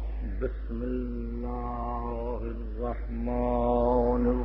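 A man chanting in long drawn-out held notes, two sustained tones each about a second and a half long with sliding pitch between them, over a steady low hum.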